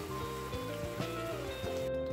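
Background music over the sizzle of beef simmering in a soy-sauce gravy in a cast-iron skillet; the sizzle cuts off just before the end.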